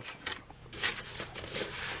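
Light handling noise as a plastic embroidery hoop is moved on a workbench and a roll of stabilizer is picked up: a few soft taps and rustling.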